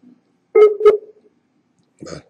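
Call-software alert tone: two short, loud electronic beeps about a third of a second apart, with a brief ringing tail.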